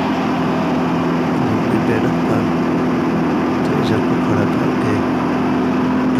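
Belt-driven canola (mustard) thresher running steadily: a continuous mechanical drone with a constant hum.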